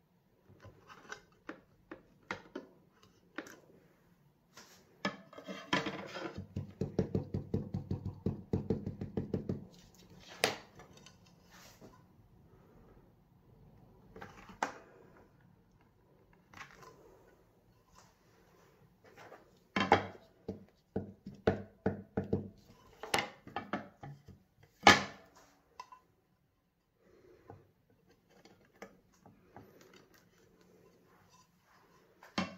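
Clear plastic stamps and an acrylic sheet being handled and pressed down on a stamping platform: scattered clicks and taps of plastic, a few seconds of rapid rubbing about five seconds in, and a cluster of sharper taps a little past the middle.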